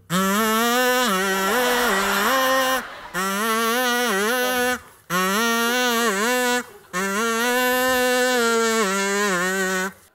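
A toy trumpet blown in four long phrases of held, buzzy notes that step up and down between two or three pitches, played as a song tune, with short breaks between phrases.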